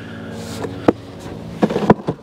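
Long cardboard box being flipped over and handled, with a sharp tap about halfway and a quick cluster of clicks and knocks near the end, over a steady low hum.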